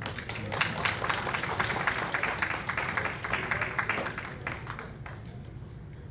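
Audience applauding, a dense patter of clapping that dies away after about four and a half seconds.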